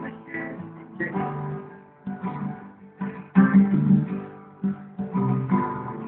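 Acoustic guitar strummed, a new chord about once a second, each one ringing on.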